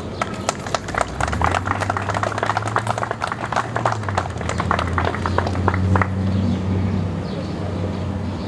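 A small outdoor audience applauding, with individual claps audible, thinning out and stopping about six seconds in. A low steady hum runs beneath.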